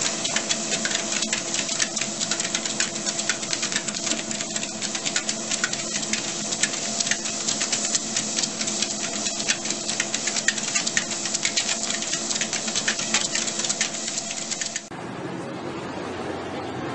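ProForm treadmill running, a steady motor hum under fast, dense ticking as two corgis trot on the belt. Near the end it cuts suddenly to an even street-and-wind hiss.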